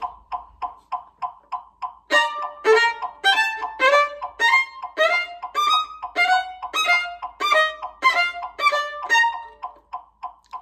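Metronome ticking at 200 beats per minute, about three clicks a second. About two seconds in, a violin joins, playing a fast passage as a rhythm practice exercise in time with the clicks, and stops just before the end.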